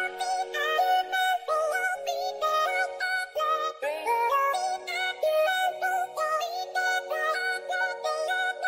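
Electronic workout music: a quick melody of short notes in a synthetic, voice-like lead, with some notes sliding in pitch. Almost no bass in this stretch.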